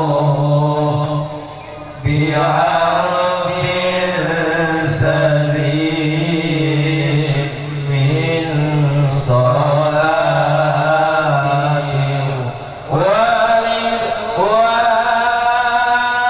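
A group of men chanting devotional verses in unison, with the lead voices amplified through handheld microphones. The chant runs in long held, wavering phrases, with brief breaks for breath about two seconds in and again near thirteen seconds.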